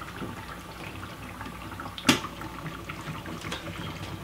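Millennium M10 10-lpm oxygen concentrator running with a steady hum while its bubble humidifier bubbles, and a sharp click about two seconds in as the supply tubing is handled at the humidifier outlet.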